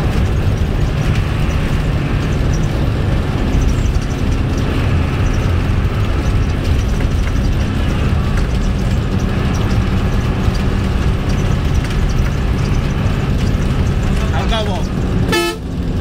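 Steady drone of a bus engine and road noise heard from inside the moving bus's cabin, with a short horn toot near the end.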